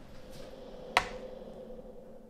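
A single sharp click about a second in as a power bank is set down on a digital kitchen scale, over a faint steady hum.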